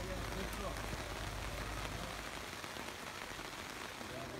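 Steady rain falling on tents and tarpaulins, with faint voices in the distance.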